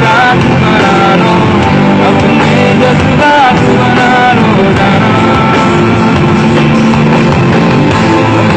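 Live pop-rock band music playing loud and steady, with an electric guitar.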